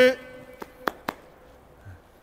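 A man's short spoken 'ouais', then three sharp clicks about a quarter of a second apart, the first faintest.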